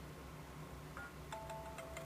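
Faint music from an iPhone's small speaker, a new iTunes Radio track starting up with a few held notes about a second in.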